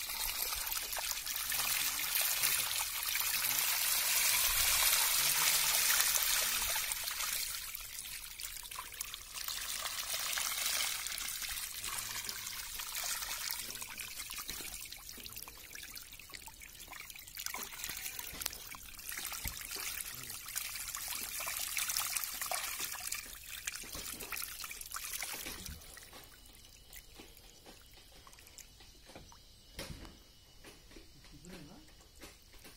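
Shallow pond water trickling and splashing over a submerged concrete step, a steady crackling wash that grows quieter near the end.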